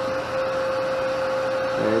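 A steady machine hum with one constant, unchanging whine: a small motor or fan running.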